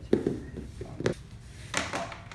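Practice butterfly swords knocking against each other in a few short clacks: the loudest just after the start, others about a second in and near the end.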